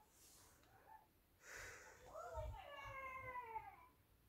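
A cat meowing: one long, drawn-out call that rises and then falls in pitch, lasting about a second and a half, just after a short breathy noise.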